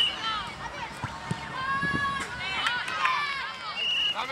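Several children's high voices shouting and calling over one another during a youth football game, with one longer held call about halfway through.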